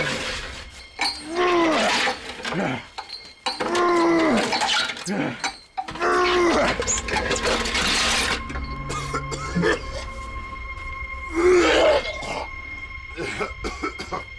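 A strongman's short, strained grunts and shouts of effort, several in a row, over background music, with a laugh about eight seconds in.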